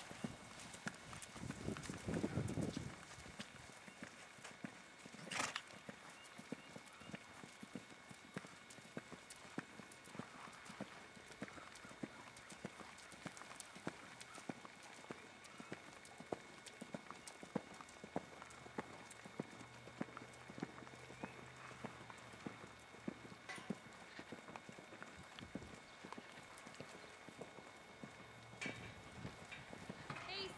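A horse's hoofbeats on sand arena footing, a steady rhythm of soft thuds as it is ridden, mostly at a trot. A brief low rumble about two seconds in.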